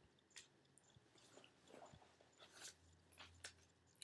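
Near silence with faint, scattered rustles and clicks of small items being handled while rummaging through a purse.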